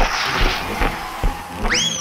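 Cartoon soundtrack: a rushing hiss over a steady low thudding beat about two and a half times a second, then near the end a whistle-like tone that slides sharply up and falls slowly away as the characters are jerked into the air.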